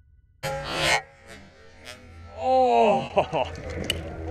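A sudden loud rush of noise about half a second in, then a man's startled voice exclaiming "oh", with a few sharp clicks near the end.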